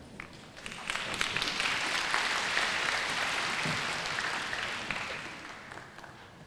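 Audience applauding. The clapping rises about a second in, holds steady, and dies away near the end.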